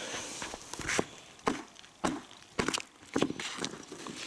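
Boot footsteps crunching on frost-covered pond ice, about two steps a second.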